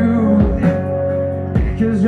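Live indie folk band playing: hollow-body electric guitar over sustained notes, with a few low beats.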